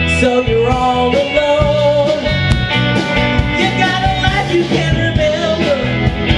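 Live rock band playing a song on electric guitars and drums, with guitar notes sliding in pitch over a steady beat.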